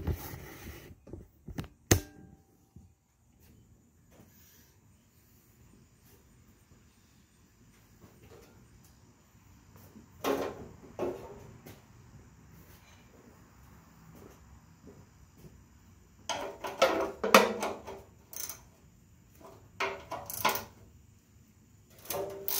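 Intermittent clanks and knocks of tools and metal body parts being handled while the seat and rear fenders of a Cub Cadet 126 garden tractor are unbolted: a sharp knock about two seconds in, a quiet stretch, then clusters of clatter about halfway through and again near the end.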